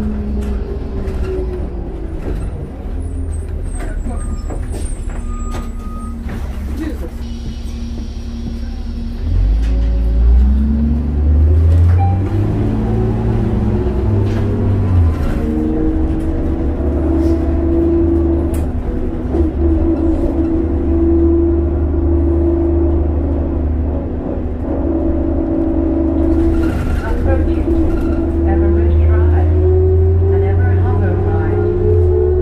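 Diesel engine and drivetrain of a 2002 New Flyer D40LF transit bus, heard from inside the cabin. A brief hiss of air comes about eight seconds in. From about nine seconds the engine note climbs and grows louder as the bus speeds up, then settles into a steady cruise.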